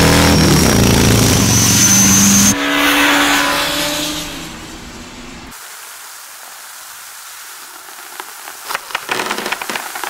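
Loud, engine-like buzzing of a cartoon fly speeding after a ladybird, designed to sound like a racing motor, with a thin rising whistle over it. A few seconds in, the pitch drops and the sound fades away, leaving a soft hiss and a few small clicks near the end.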